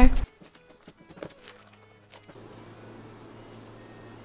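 Faint sticky clicks and crackles of thick, stiff fluffy slime being kneaded by hand, with one louder click about a second in; after that only a low, steady room hum.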